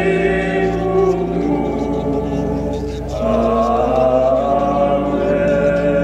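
Sacred church music of long held chords, with a steady low bass under them, changing to a new, higher chord about three seconds in.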